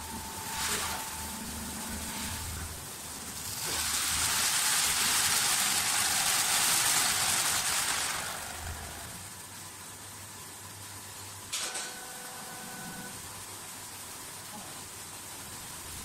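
Automatic wood lathe turning a wooden spindle blank, its rotating cutter shaving off chips with a steady hiss that swells louder from about four to eight seconds in. A sharp click near twelve seconds in is followed by a faint steady tone.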